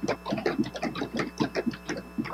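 Quick, irregular run of small clicks and taps, about seven a second, from hands handling things at a lectern close to a desk microphone, over a steady mains hum in the sound system.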